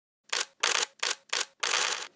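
Camera shutter sound effect: five quick snaps in a row starting a moment in, about three a second, the last one longer.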